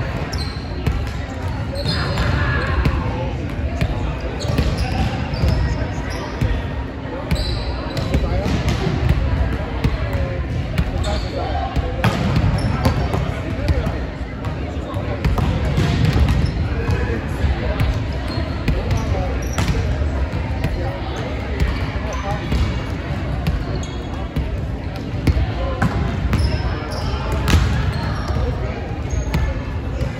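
Volleyballs being hit and bouncing off a gym's hardwood floor during a hitting drill: repeated sharp smacks and bounces scattered throughout, echoing in the large hall, over indistinct chatter from the players.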